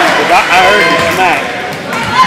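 Several raised voices calling out over one another in a hall, with a basketball being dribbled on a hardwood court.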